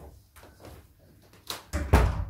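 A room door being shut: a sharp click about one and a half seconds in, then a heavy, low thump near the end as it closes.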